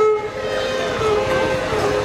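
Carnatic music: a melodic line held on long notes with slow glides between them, in the style of violin and vocal gamaka, with accompaniment.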